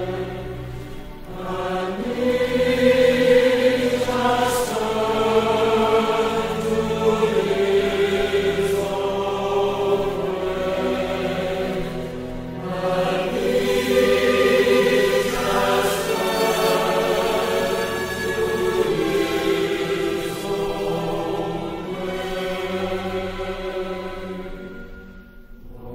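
Recorded sacred music: slow, held chords sung by a choir, shifting every few seconds, with no spoken words.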